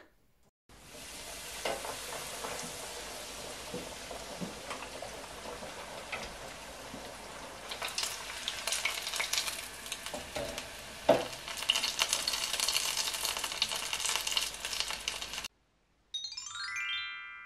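Bitterballen deep-frying in hot oil in an electric deep fryer basket: a steady sizzle with fine crackling and popping that grows denser in the second half, then cuts off suddenly near the end.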